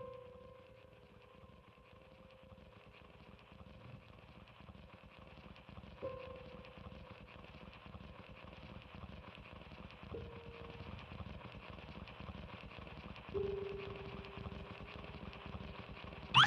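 Grand piano played softly in free improvisation: four single notes struck a few seconds apart, each left to ring, over a faint hiss.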